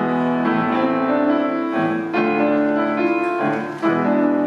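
Grand piano playing slow, held chords, a new chord struck about two seconds in and another near the end, each left to ring.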